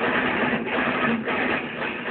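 Heavily distorted electric guitar playing a chugging metal riff, in blocks broken by short gaps about every half second. The recording is poor quality and harsh.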